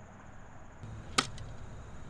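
A single sharp impact a little over a second in, followed by a fainter click, over a low steady hum.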